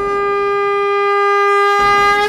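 A conch shell blown in one long, steady note that slowly swells, with a rushing whoosh rising under it near the end.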